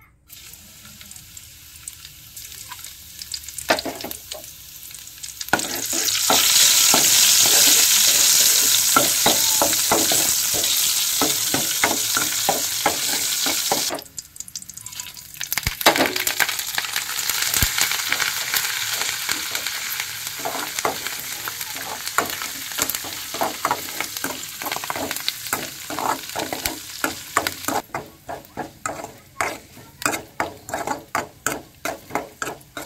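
Hot oil in a metal kadai sizzling as a tempering of dried red chillies, curry leaves, cumin and garlic fries. The sizzle swells loud a few seconds in, drops away suddenly around the middle and comes back. Near the end a metal ladle stirs the pan, giving regular short clicks against it.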